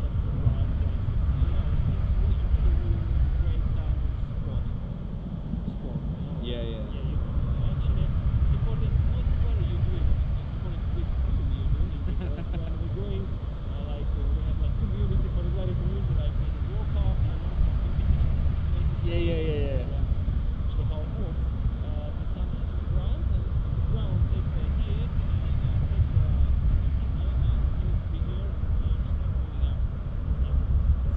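Airflow buffeting the microphone of a selfie-stick camera on a paraglider in flight, a steady low rumble, with faint voices showing through now and then.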